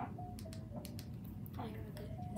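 A girl speaking quietly in short phrases, with faint music in the background.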